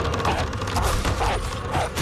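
Creaking with a fast run of clattering knocks, dense and chaotic.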